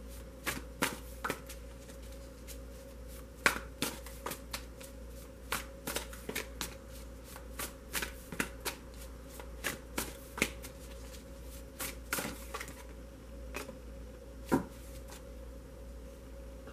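A deck of tarot cards being shuffled in the hands: irregular light card slaps and flicks, a few a second, with louder snaps about three and a half seconds in and again near the end. A steady low hum runs underneath.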